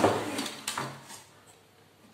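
Plastic piano-key buttons of an old Akai cassette deck's mechanism being pressed by hand: a sharp clack at the start and a second, lighter click under a second later.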